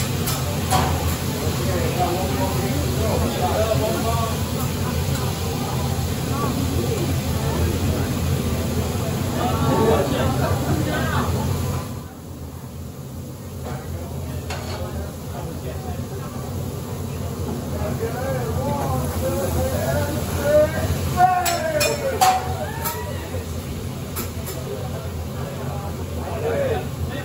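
Meat and vegetables sizzling on a steel teppanyaki hotplate, with a chef's metal spatula clicking on the plate a few times near the end, over a steady low hum and the chatter of diners. The whole sound drops noticeably about twelve seconds in.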